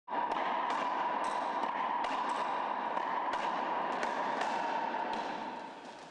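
A racquetball being hit around an enclosed court: about ten sharp, irregularly spaced smacks of the ball off the racquet, walls and floor. A steady hiss runs under them and fades out near the end.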